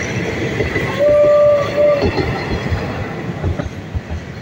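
Passenger train coaches rolling past with a steady rumble and clatter of wheels on rails. About a second in, a train horn sounds twice, one long steady blast and then a short one.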